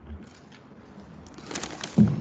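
A desk conference microphone's feed switching on, picking up a low hum and rustling and handling noise from papers, growing louder, then a sharp knock at the very end as the microphone or table is touched.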